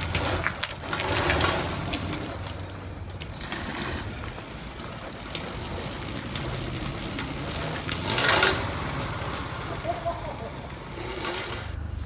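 Homebuilt electric go-kart driving on a concrete street, its tyre and motor noise swelling twice as it moves.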